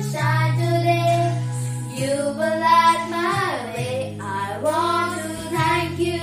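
Two girls singing a song together, their voices holding notes and gliding between them, over a steady low accompaniment.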